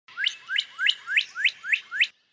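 Northern cardinal singing a run of about seven quick whistled notes, each sliding sharply upward, about three a second.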